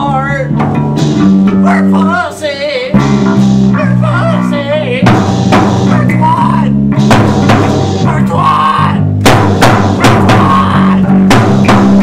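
Rock band demo music: bass and guitar holding chords under a wavering melody line, with a drum kit coming in about five seconds in and keeping a beat.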